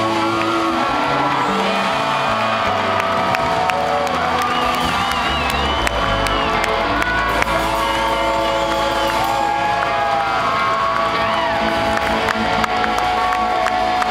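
Live rock band on electric guitars holding out the ending of a song, with long sustained notes, while a crowd cheers and whoops.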